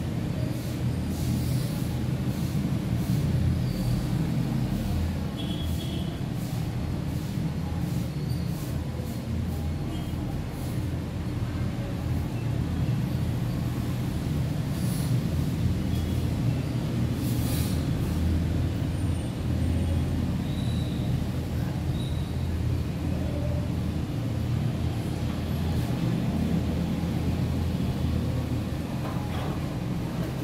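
A steady low rumble with a faint constant hum, unchanging throughout, with a few faint ticks.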